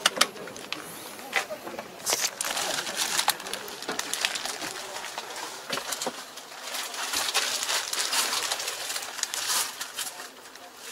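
Irregular clicks, knocks and rustling of handling inside a tractor cab.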